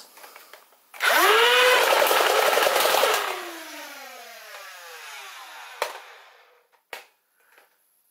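Full-auto modified Nerf Rayven, converted to 2S LiPo with upgraded motors: about a second in its flywheel motors spin up with a quick rising whine and it fires a rapid burst for about two seconds, then the flywheels wind down with a long falling whine. Two short clicks follow near the end.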